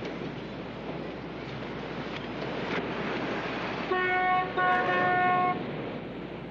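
Car horn sounding twice about four seconds in, a short toot and then a longer one, over a steady background rush.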